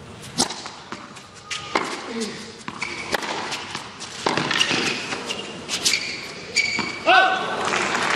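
Tennis serve and rally on a hard court: a string of sharp racket-on-ball hits and ball bounces, with short high squeaks of shoes on the court in the middle of the rally.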